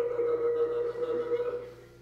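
A single held musical note that starts suddenly, stays steady for about a second and a half, then fades away.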